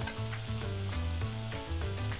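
Food sizzling as it fries in a hot pan, a steady hiss, with background music.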